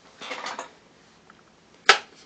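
Handling noise from a person working a tablet close to the microphone: a short rustle, then a single sharp click near the end.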